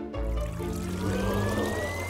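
Background music over the trickle of liquid pouring from a face-mask maker machine into a mask mould, with a thin tone rising steadily in pitch.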